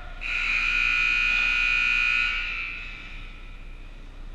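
Ice rink scoreboard buzzer sounding one loud, steady, high blast of about two seconds, ringing on briefly in the arena as it fades.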